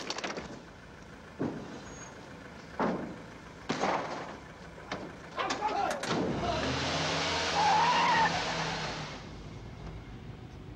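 A few short thumps and shouts, then about six seconds in a vehicle engine revs hard and tyres squeal as it pulls away fast. The squeal is loudest just before the end.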